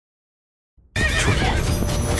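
Silence for nearly a second, then a loud mix of animated-action sound effects and music cuts in suddenly.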